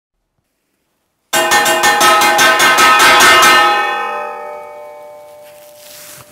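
Silence, then a little over a second in a metal ladle beats rapidly on a steel plate, about seven strikes a second for some two seconds, and the metallic ringing dies away over the next two seconds.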